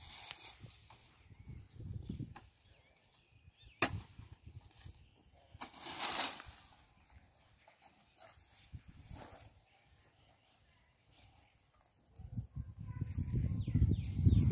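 Garden hoe dragging and chopping through loose soil in scattered strokes, as sweet potatoes in a raised bed are covered over. There is a sharp click about four seconds in, a short scraping hiss around six seconds, and a low rumble building near the end.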